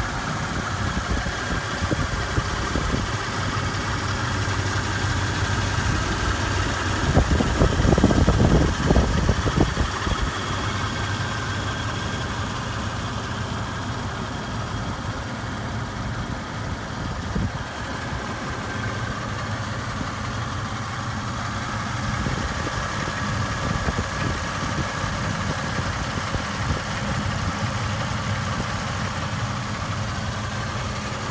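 Toyota 3.4-litre V6 engine of a 2000 4Runner idling steadily, heard from over the open engine bay. About seven seconds in, a louder, rougher low rumble rises over it for about three seconds, then settles back to the even idle.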